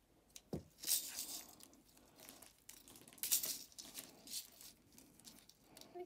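Clear adhesive tape being pulled off the roll and torn by hand, a few short scratchy bursts, the loudest about three seconds in.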